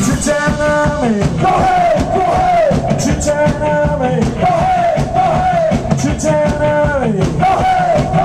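Live ska band playing, loud: a horn riff of arching, downward-sliding notes repeats every few seconds over drums, bass and guitar.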